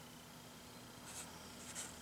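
Faint rustle of a hand brushing over a comic book's paper page, two soft brushes about a second in and near the end.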